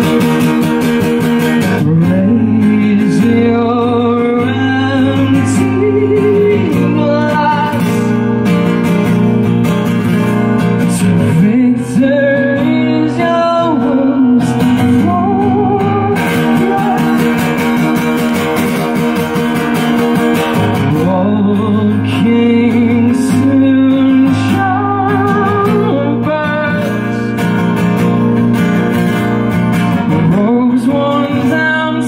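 Acoustic guitar played solo in a song, with a male voice singing over it from about two seconds in.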